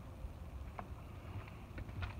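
Quiet ambience while walking a leafy trail: a low rumble of wind and handling on the microphone, with a few faint footstep ticks.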